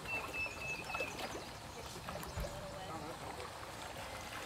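Pond water trickling while trout splash at the surface, taking thrown fish feed, with a few small splashes and faint voices in the background.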